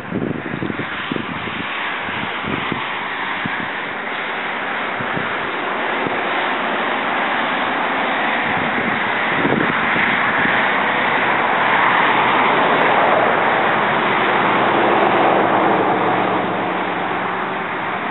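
Wind blowing across the microphone: low buffeting thumps in the first few seconds, then a steady rush that swells in the middle and eases near the end.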